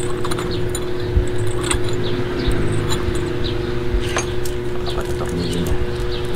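Steel coil clutch springs clinking against each other and against the clutch pressure-plate posts as they are set in place by hand, a scatter of small metallic clicks. A steady machine hum runs underneath.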